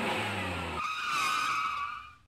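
Vehicle sound effect: an engine running, giving way about a second in to a high screech as the vehicle skids to a stop.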